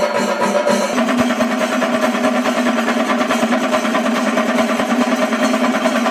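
Chenda melam: a large ensemble of Kerala chenda drums beaten with sticks in fast, dense strokes, with a steady ringing tone underneath.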